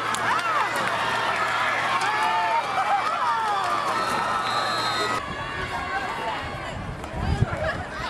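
Spectators at a football game shouting and cheering during a running play, many voices overlapping. About five seconds in it cuts abruptly to quieter field and crowd noise with a low rumble.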